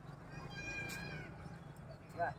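A single high-pitched animal call lasting under a second, dipping in pitch at its end, over a steady low background hum.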